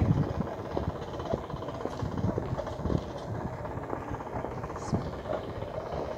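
Outdoor noise beside a railway line: a steady low rumble with scattered small knocks and faint distant voices.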